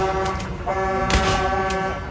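A horn sounds twice at one steady pitch, a short blast and then a longer one of about a second, over a few sharp bangs from the show's pyrotechnics.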